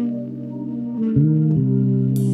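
Instrumental band playing live: sustained electric keyboard chords over electric bass, the chord and bass note changing about a second in, where the music gets louder.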